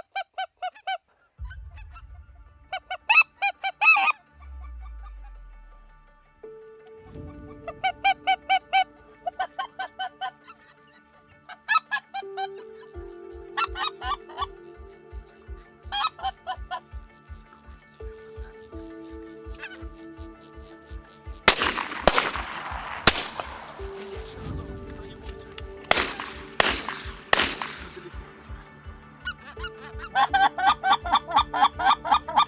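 Geese honking repeatedly in short bursts as a flock comes in, over background music with sustained tones and a steady low beat. About two-thirds of the way in, a volley of about six shotgun shots rings out, each with a trailing echo; these are the loudest sounds.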